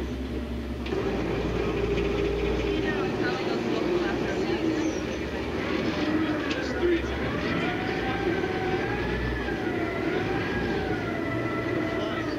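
Steady low rumble of a vehicle running, with people talking. In the second half a high, wavering tone rises and falls slowly for several seconds.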